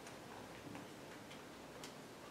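Quiet room tone with a few faint, short ticks, about one every half second.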